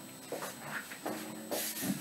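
Faint footsteps and clothing rustle from a person moving away from the microphone across a small room: a few soft bumps, with a brief brighter rustle past the middle.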